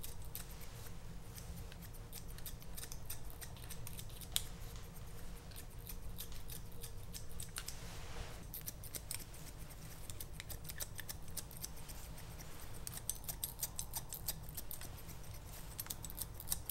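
Barber's scissors snipping hair close up, in quick runs of cuts that thicken near the end, with a soft rustle of hair about halfway through, over a low steady hum.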